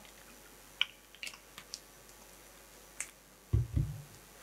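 A handful of short, sharp clicks spread over the first three seconds, then two loud, deep bumps near the end, typical of a handheld microphone being handled.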